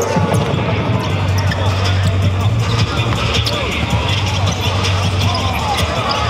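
A basketball bouncing on a hardwood court during a game in a large hall, with voices and music mixed in.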